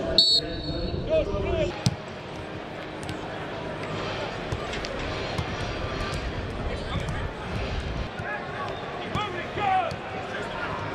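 Footballs being kicked on a grass pitch during a warm-up: occasional sharp thuds of boots striking the ball, with players' shouts in the background.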